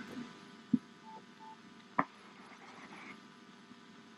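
Faint steady hum inside a patrol car, with two short electronic beeps of the same pitch a little after a second in and a couple of sharp clicks.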